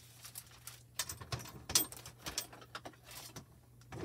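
Hands rummaging through craft supplies: scattered light clicks, taps and rustles of small items being moved and set down, the sharpest tap a little before the middle, over a faint steady hum.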